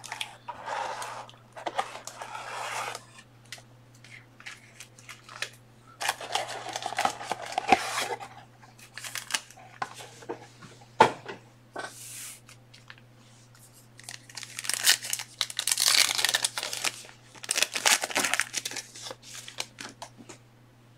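Packaging being torn and crinkled in three longer spells, with scattered sharp clicks and knocks of handling in between; a faint steady hum runs underneath.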